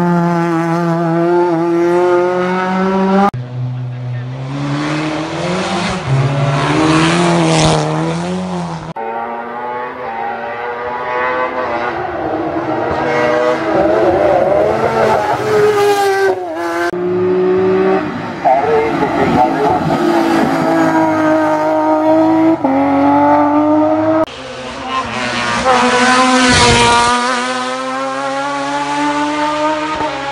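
Hill-climb race cars passing one after another at full throttle, engines revving up and changing gear, with abrupt changes from one pass to the next every several seconds.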